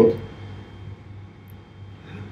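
Quiet room tone with a faint steady low hum, just as a man's voice trails off at the very start.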